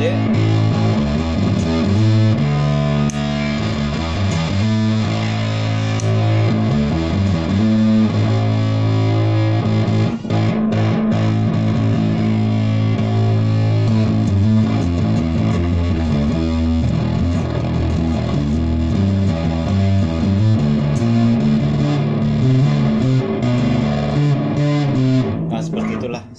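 Washburn bass guitar played through an engaged Pediculus 1989 bass fuzz pedal into a Hughes & Kettner Silver Edition guitar amp: distorted, sustaining bass notes and riffs with a thick low end. The notes change every second or two, and the playing stops near the end.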